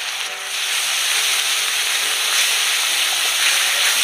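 Onion and spice masala frying in oil in a metal karahi, a steady sizzle, with a spatula stirring it through the pan.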